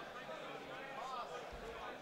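Indistinct talking from people in the background, with a dull low thump about one and a half seconds in.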